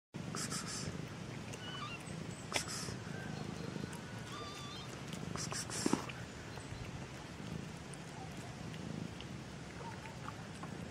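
Kitten purring steadily, with short breathy bursts near the start, at about two and a half seconds and again at about six seconds. Faint high chirps sound now and then behind it.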